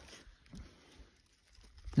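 Faint rustling on dry leaf litter, with soft bumps about half a second and a second in, as a shed antler is handled.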